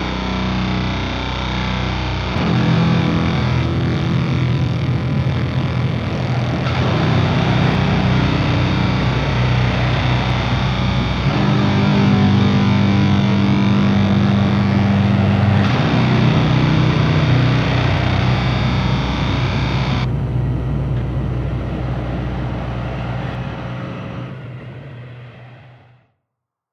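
Heavy crust punk music with distorted guitar: long held chords that change every four or five seconds, fading out over the last few seconds as the album ends.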